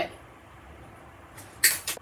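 Wire nippers snipping through thin craft wire: one short, sharp snip near the end, after a quiet stretch.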